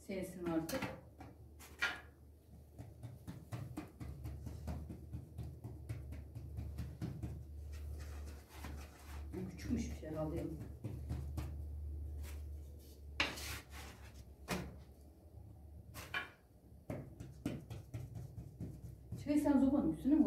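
Occasional knocks and taps of wood from a wooden bread paddle and bazlama dough being patted out by hand on a wooden board, over a steady low hum. A few brief murmured words come in near the start, in the middle and near the end.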